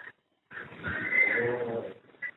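A person's drawn-out wordless voice sound, a hesitation between words, starting about half a second in and lasting over a second.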